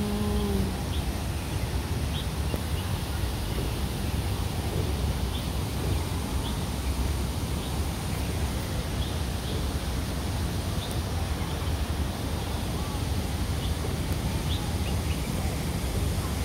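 Steady outdoor background noise, heaviest in the low rumble, with faint short high chirps now and then.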